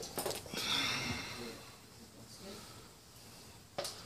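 A person breathing out near the microphone, a short breathy hiss, with a light click at the start and another near the end.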